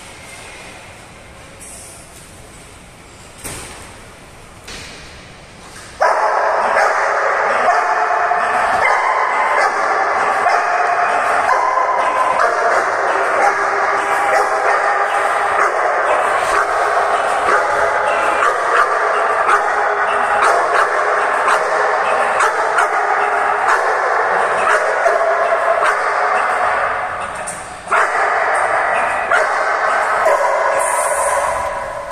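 A dog barking loudly and rapidly over and over, starting suddenly about six seconds in and keeping on, with a short break near the end.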